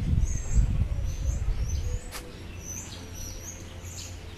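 Birds chirping in short, high, repeated calls among trees, over a low rumble that fades about halfway through.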